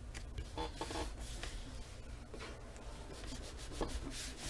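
Hands rubbing and brushing over paper and cardstock, pressing a decorative paper panel flat onto a black cardstock page, in a series of short irregular strokes.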